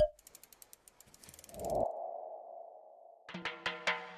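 Electronic intro sound effects: a sharp hit, a quick run of faint ticks, then a swelling, held ping-like tone. About three seconds in, the song's intro begins with a run of short, separate notes.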